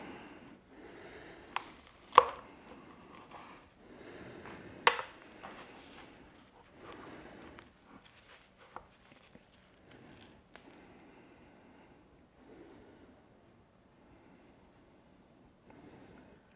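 Large knife slicing through a smoked beef short rib on a wooden cutting board: faint cutting and rubbing sounds, with a few sharp taps, the loudest about two and five seconds in.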